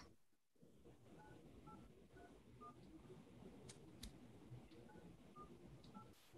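Faint telephone keypad (DTMF) tones as a caller keys in a meeting ID on a phone dialling in to a Zoom meeting. There are about four short beeps, a pause with a couple of faint clicks, then about three more beeps near the end.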